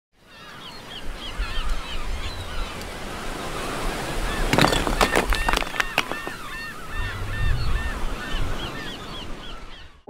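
Seaside ambience: surf washing steadily under birds calling in quick short repeated calls, about three a second, with a few sharp snaps near the middle. It fades in at the start and fades out at the end.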